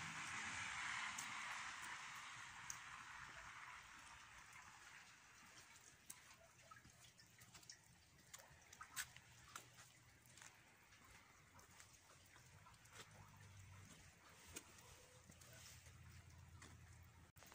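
Faint outdoor street ambience on a wet, slushy street: a hiss that dies away over the first four seconds, then near quiet with scattered faint ticks and taps.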